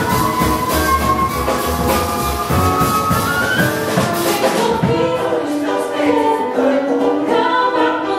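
Jazz choir singing with a live band of piano, upright bass and drum kit. The drums ease off about halfway through, leaving the choir's voices more to the fore.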